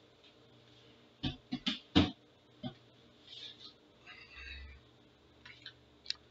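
Quiet room, then a quick run of four or five sharp knocks or clicks starting about a second in, the loudest near two seconds, followed by one more knock and softer rustling and small clicks.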